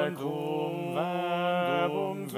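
A small vocal ensemble singing in harmony, holding sustained chords that move to a new chord about once a second with brief breaks between phrases.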